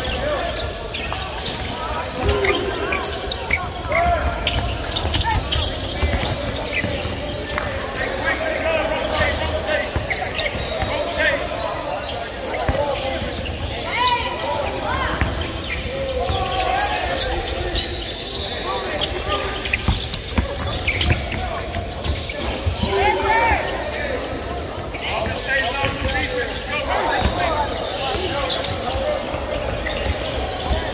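Basketballs bouncing repeatedly on a hardwood court, with sharp impacts throughout. The thuds echo in a large arena, and players' voices call out in the background.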